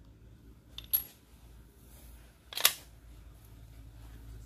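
Two light metallic clinks, one about a second in and a louder one a little before the end, as a small steel washer is set down into the shotgun stock over the action spring tube.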